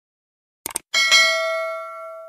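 Two quick clicks, then a single bell-like ding about a second in that rings on and fades away over about a second and a half.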